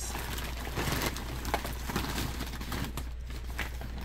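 Light rustling and scattered small knocks of items being handled and moved about off camera, over a steady low hum.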